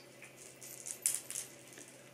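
A few faint rustles and scratches as a kitten bats at a wand toy's feather and string, the loudest about a second in.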